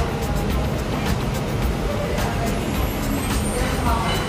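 Restaurant dining-room background: music playing over a steady low rumble and indistinct chatter, with frequent light clicks such as cutlery and dishes.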